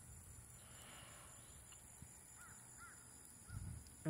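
Near silence, with a bird calling faintly three times in quick succession in the second half: short calls about half a second apart. There is a soft low bump near the end.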